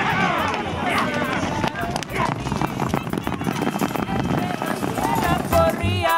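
Excited shouting from voices at the racetrack over the drumming hoofbeats of racehorses galloping out of the starting gate on dirt. Near the end, a sung song with music comes in.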